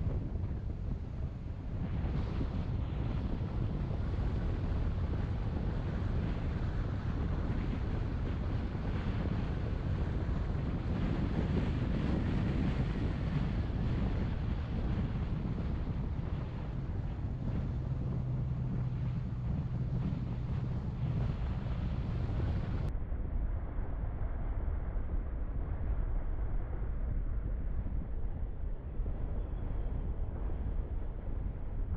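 Wind buffeting the microphone of a camera on a moving bicycle, a steady low rumble. A faint steady hum joins for several seconds after the middle.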